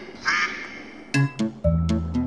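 A duck's quack about a quarter second in, then music with regular drum hits and a low bass line starting about a second in.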